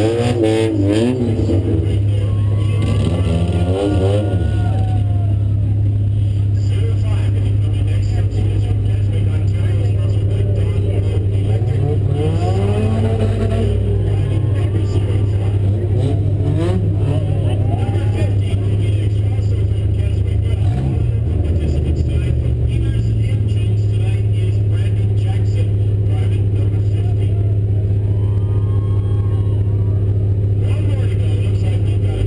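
A demolition-derby car's engine idling with a steady low hum, heard inside its stripped cabin, with engine revs rising and falling over it several times.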